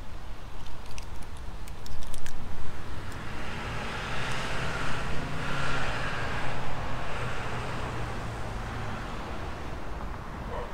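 A motor vehicle driving past, its sound swelling about four seconds in and fading away over the following few seconds. A few sharp clicks come earlier, about a second in.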